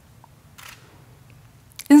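A pause in a talk: low, steady room tone through a headset microphone, with one faint short breath-like hiss just over half a second in; a woman's voice resumes near the end.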